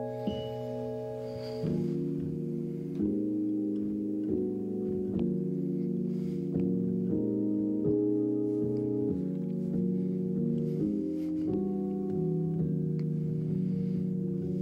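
Keyboard playing slow ambient music: sustained chords, each held for a second or two before it changes to the next.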